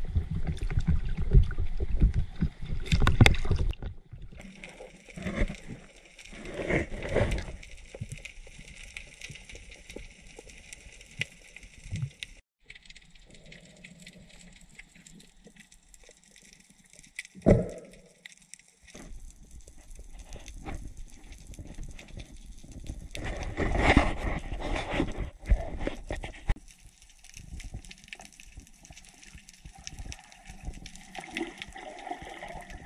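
Sea water sloshing and splashing close to the microphone at the surface for about four seconds, then muffled underwater sound with a few short bubbling gurgles.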